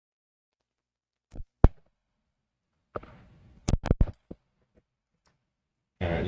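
Microphone handling noise while the audio feed is being switched over, against otherwise dead silence. There are two knocks about a second and a half in, then a short rustle with a quick cluster of sharp clicks and bumps around the fourth second.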